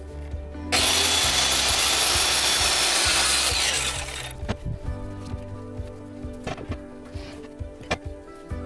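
Electric circular saw cutting through a 2x8 board for about three seconds, starting abruptly about a second in and stopping near the middle, with a few light knocks after it.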